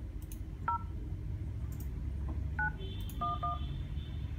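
HTC U11 phone dialer keypad playing touch-tone (DTMF) beeps as 911 is keyed in on the emergency dialer. One short beep comes about a second in, then three more near the end, the last two in quick succession, over a steady low background rumble.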